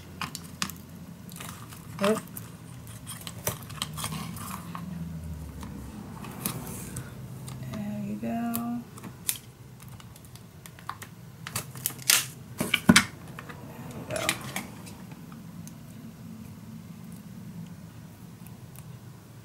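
Tape runner being pressed and drawn along a paper strip on chipboard, with scattered clicks, taps and light rustles of card and paper being handled; a cluster of sharper clicks comes about two-thirds of the way through.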